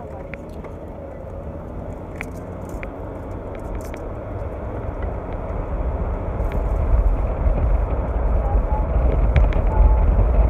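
Cabin noise of a moving car gathering speed: road and wind noise with a low rumble that grows steadily louder, strongest in the second half.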